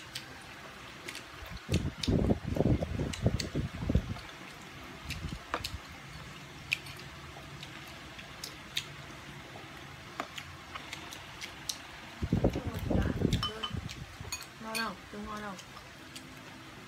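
Chopsticks clicking lightly and now and then against bowls and plates during a meal, with two short spells of low, muffled sound close to the microphone, around two seconds in and again near the end.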